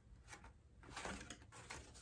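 Faint handling sounds of paper plates: a few light taps and rustles as a plate is set down on the floor and another is picked up.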